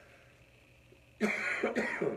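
A man coughing twice in quick succession, starting about a second in.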